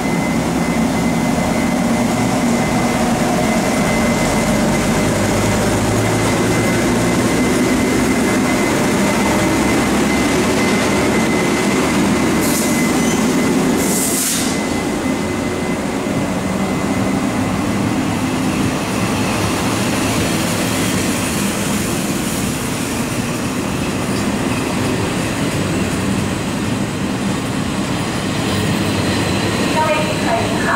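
A General Electric E42C electric locomotive and its passenger coaches move along the platform with a steady loud rumble of wheels on rail. A thin steady whine runs through the first third, and a couple of short high squeals come around the middle.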